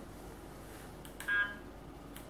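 Uniden R7 radar detector giving one short electronic beep about a second and a quarter in, as a menu button is pressed to step to the next K-band limit setting.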